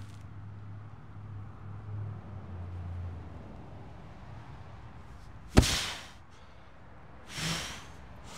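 A heavy stack of sandbags lifted in a deadlift and dropped onto concrete: a low, held straining sound for the first few seconds, then one sharp thud about five and a half seconds in, followed by a hard exhale.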